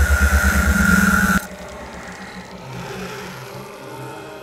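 Film soundtrack: a loud, rapidly pulsing low rumble under a steady high tone, cutting off abruptly about a second and a half in, then a much quieter low sound bed.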